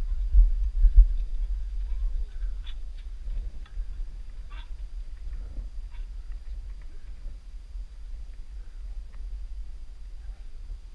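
Low rumbling buffeting on the microphone of a body-worn camera, from wind and movement as a climber hauls up a steep granite cable route. It is strongest in the first two seconds, then eases, with scattered faint clicks and scuffs of boots and gloves.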